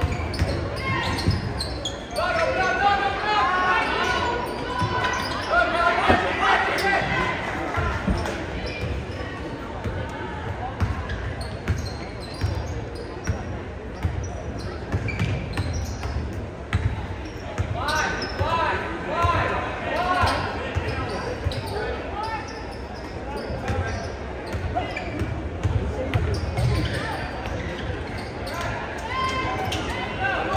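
Basketball dribbled on a hardwood gym floor, its bounces echoing in the hall, under the voices of spectators and players, which rise in shouts a couple of seconds in and again past the halfway point.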